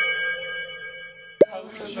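Short electronic intro jingle of bright, chiming tones with a quick upward glide, ending in a single sharp pop sound effect about a second and a half in.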